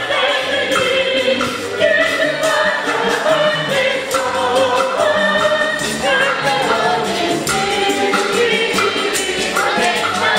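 Church choir of women singing a gospel hymn together, with percussion keeping a steady beat.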